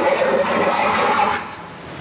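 Harsh noise music played live: a dense, loud wall of noise with a few held tones running through it, which drops away sharply about one and a half seconds in and starts to build again near the end.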